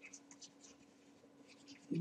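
Stylus writing a word on a pen tablet: a series of faint, short scratches over a faint steady hum.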